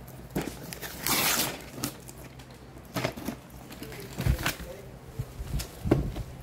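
Gift wrapping paper being torn and rustled off a box, with a longer rip about a second in and shorter tears and crinkles after it. A few soft low bumps come from the box being handled after the middle.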